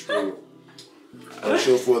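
Voices: a short, sharp vocal call right at the start, a brief pause, then a voice saying "vor" near the end.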